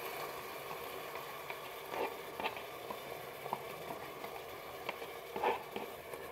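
Faint, steady sizzle of lardons frying in their rendered fat in the bowl of a Moulinex 12-in-1 multicooker on wok-sauté mode. A few soft taps and scrapes of a spoon come in as thick crème fraîche is spooned into the bowl.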